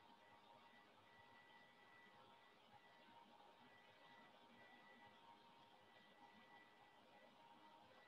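Near silence: faint room tone, a steady hiss with a thin high tone that comes and goes.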